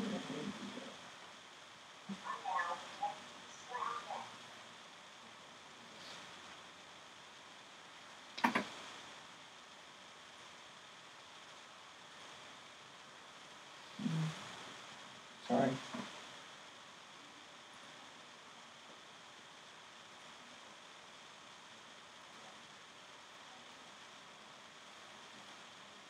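Quiet room tone with a few faint, scattered words and murmurs and a brief sharp sound about a third of the way in; no steady machine or robot sound stands out.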